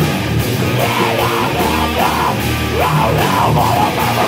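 A heavy metal band playing loud and steady live: distorted electric guitars over bass and drums.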